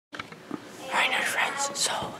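A boy whispering, starting about a second in, after a few soft clicks at the very start.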